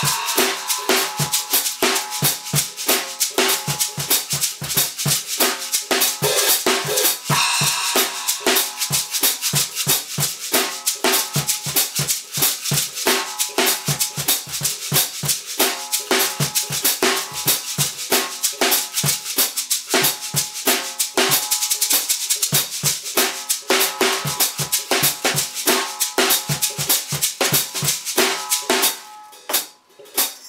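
Drum groove on a small acoustic kit, with a shaker played in one hand against snare strokes and low kick thuds from a cajon used as the bass drum. It runs as a steady fast rhythm and stops about a second before the end.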